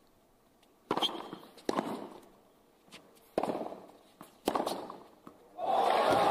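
Tennis ball struck by rackets in a short rally, about five sharp hits spaced roughly a second apart. Crowd applause breaks out near the end as the point finishes.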